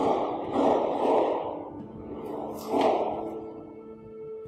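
Two loud, breathy exhalations from a person moving into a deep stretch. The first starts suddenly and lasts about a second and a half; the second is short, near the end. Soft background music plays underneath.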